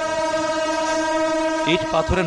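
A train locomotive's horn held in one long, steady blast that stops just before the end.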